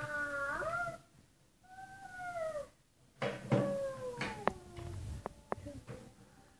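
A toddler's drawn-out sing-song vocalizing in long held notes. A slowly falling note breaks off about a second in, a shorter arching note follows, and then more held notes come with a few sharp clicks.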